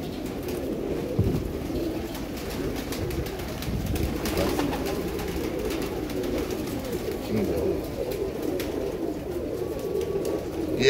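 Many domestic pigeons cooing at once, an overlapping, continuous chorus of low calls.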